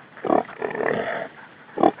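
Feral hog grunting in short bursts: a quick one near the start, a longer one about a second in, and a brief one near the end.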